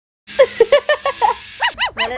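Golden retriever snarling and growling at its own reflection in a fast run of short, pitched grumbles, about five a second. Near the end come two short rising-and-falling cries.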